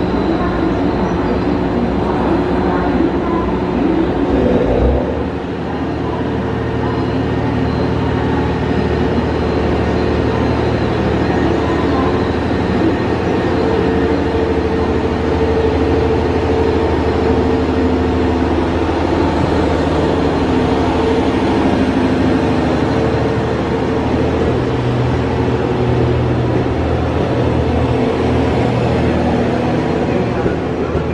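JR West DEC741 diesel-electric inspection train departing and rolling past at low speed, its engines giving a steady drone. The engine note changes about five seconds in as it pulls away.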